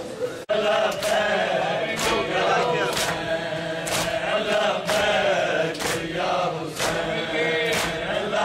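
Many men chanting a nauha together in unison, with sharp chest-beating (matam) slaps about once a second keeping the beat. The sound breaks off for a moment about half a second in, then runs on steadily.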